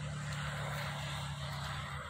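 A motor vehicle passing: a steady engine hum with a wash of noise that builds and then fades over a few seconds.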